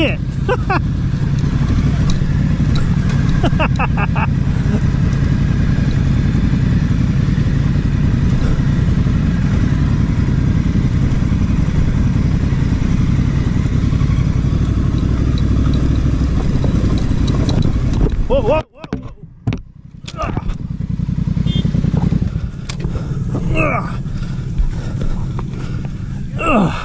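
Honda Africa Twin's parallel-twin engine running at low speed on a rocky off-road descent, mixed with steady wind and tyre noise on the helmet camera. About three-quarters of the way through, the sound cuts off abruptly and then comes back ragged and quieter as the bike goes down.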